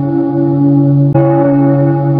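A bell rings with a sustained, steady tone of several pitches. It is struck again about a second in.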